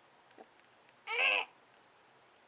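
A brief high-pitched wavering vocal sound, just under half a second long, a little past a second in, with a faint tick before it.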